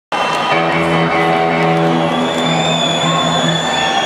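Live rock band music over an arena PA, heard from far back in the seats: guitars holding sustained notes in a steady chord.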